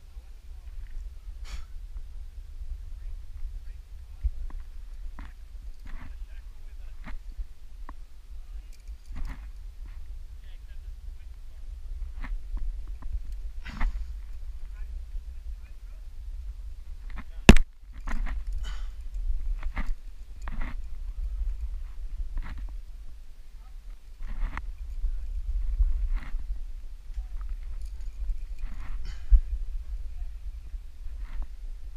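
Wind rumbling on a helmet-camera microphone, with a rock climber's short breaths and scattered scuffs of hands and shoes on sandstone. One sharp click a little past halfway is the loudest sound.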